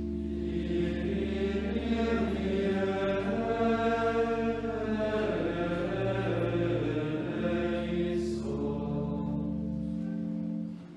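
Choral chant music: voices sing sustained notes over a low held drone whose pitch shifts a few times. The voices come in about half a second in and fade out near the end, leaving the drone.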